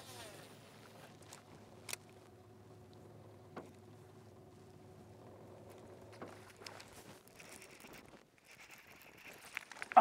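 Topwater popper being worked on calm lake water, giving a few short, soft pops, over a faint steady hum that stops about eight seconds in.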